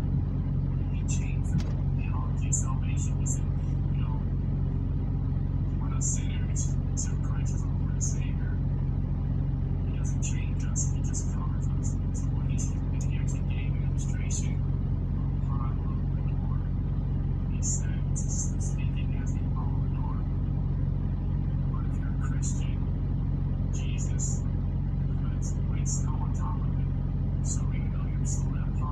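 Faint, indistinct speech played back through a phone's speaker, over a steady low hum.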